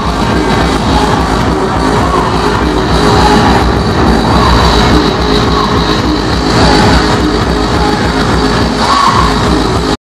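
Loud hardcore electronic dance music from a DJ set, played over a big hall sound system, with a dense, rapid kick-drum beat.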